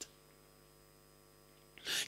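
Faint, steady electrical hum made of several steady tones over a light hiss, in a pause between a man's spoken phrases. His voice comes back just before the end.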